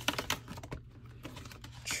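Paper bills and clear vinyl cash envelopes being handled, with a quick, irregular run of small clicks and rustles.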